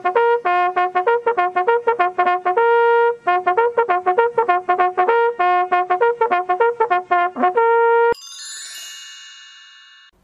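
A bugle playing a brisk bugle call on its few open notes: quick repeated notes broken by a few held ones, ending abruptly after about eight seconds. A high bright chime then rings and slowly fades.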